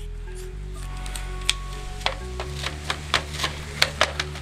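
Kitchen shears snipping excess skin off raw chicken leg quarters: a run of sharp, irregular snips, about eight, starting about a second and a half in. Background music with sustained low notes plays under them.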